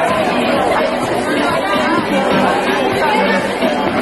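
Crowd of many young people's voices chattering and calling out at once, overlapping so that no single speaker stands out.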